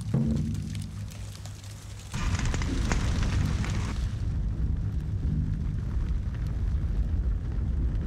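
Film soundtrack: low sustained music, then about two seconds in a sudden roar of a large fire that settles into a dense low rumble under the music.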